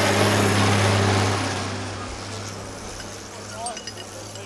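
Turbocharged farm tractor's diesel engine running hard as the tractor drives past close by: a loud, steady drone that fades away over the next two seconds or so.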